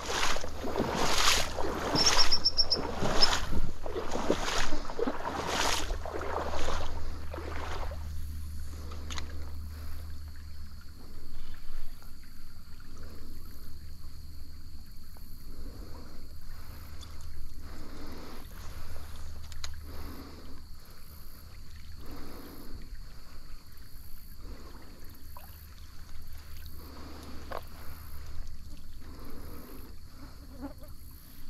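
Water splashing and sloshing in a series of strokes, about one a second and loud for the first several seconds, then softer and more spread out.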